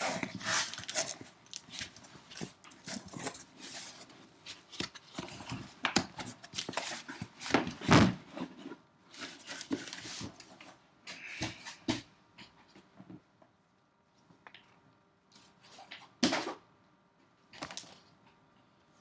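Cardboard shipping case being opened and handled: tearing, scraping and rustling of cardboard in irregular bursts. About twelve seconds in the handling thins out to a few separate knocks and rustles as the wrapped boxes are moved.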